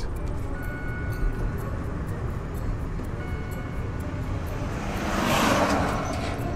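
Low road and cabin noise inside a Kandi K27 electric car crawling along slowly after a fault cut its power. A few faint brief tones sound, and a rushing noise swells near the end.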